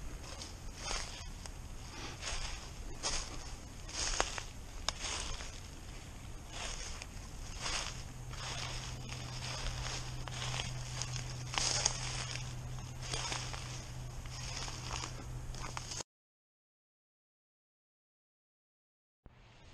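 Footsteps crunching through dry fallen leaves at a walking pace, a step about every second. A steady low hum joins about halfway, and the sound cuts off to silence near the end.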